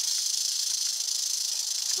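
Eastern diamondback rattlesnake rattling its tail in a steady, high-pitched buzz: the warning of a disturbed, irritated snake.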